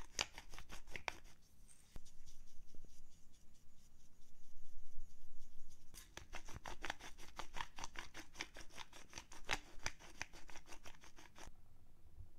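Hand pepper grinder twisted over the meat, grinding black pepper: rapid, even crunching clicks in two runs, with a pause from about a second in until about halfway through.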